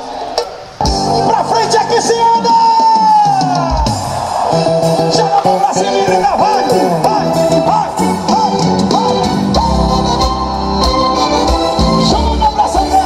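Music playing loud through a Philips Bluetooth mini-system and its speaker towers, streamed from a smartphone; the music comes in at full volume about a second in.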